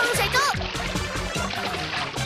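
Water splashing as a dog plunges into a pool, over background music, with quick high-pitched voice-like chirps in the first half second.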